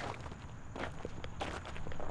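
Footsteps on dry dirt ground, about three steps.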